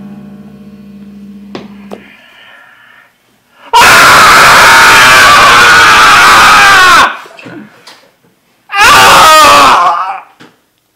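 Two loud human screams: a long one lasting about three seconds, then a shorter one near the end.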